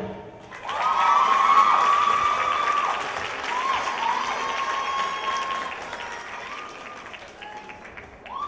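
Audience applauding at the end of a dance performance, with long high-pitched whoops and cheers over the clapping. It starts about half a second in and slowly fades toward the end.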